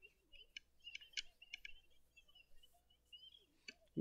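Near silence: room tone with a few faint, short clicks in the first couple of seconds.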